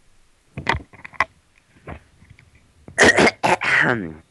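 A person clearing their throat and coughing: a short rasp about half a second in, then a louder run of harsh coughs about three seconds in.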